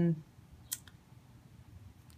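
One sharp click and then a fainter one from the organizer's clear plastic pouch pages being handled, in an otherwise quiet room.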